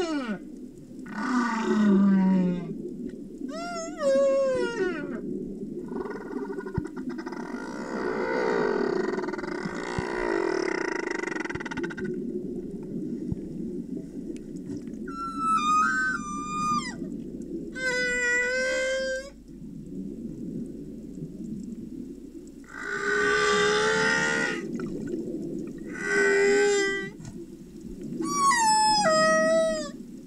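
Humpback whale song heard underwater: a sequence of drawn-out calls separated by short gaps, several sliding downward in pitch, others held on one note, with a longer, rougher growl-like call in the middle. A steady low background rumble runs underneath throughout.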